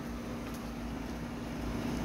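Steady low background hum with a faint hiss, unchanging throughout.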